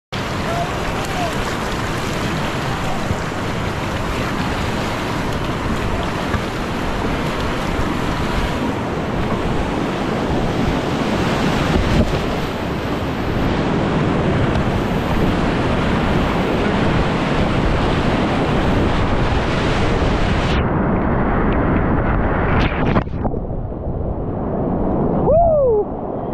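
Class V whitewater rapids rushing and churning around a kayak, heard close up with splashing water and wind buffeting the microphone. About twenty seconds in the sound turns muffled and duller.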